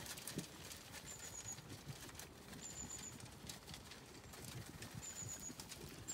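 Zwartbles sheep eating rolled barley from a trough, a faint irregular run of small crunches and clicks as they chew.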